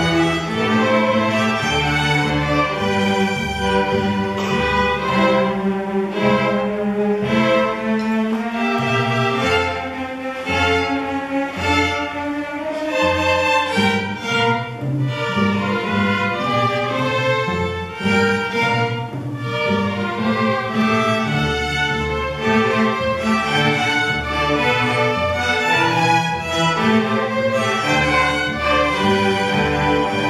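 A youth string orchestra of violins, cellos and double bass playing together, bowed notes carrying a continuous melody over sustained low notes.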